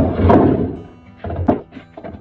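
Heavy walnut blocks knocked and set down on a wooden workbench: a thunk right at the start and another about one and a half seconds in, over background music.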